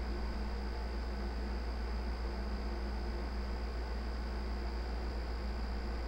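Steady low electrical hum with a faint hiss underneath, unchanging throughout: the background noise of the narrator's microphone and recording setup.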